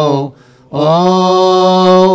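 A man chanting a Coptic Orthodox liturgical hymn before the Gospel reading, holding long, slowly wavering melismatic notes. He breaks off for a breath about a quarter of a second in and resumes just before the one-second mark.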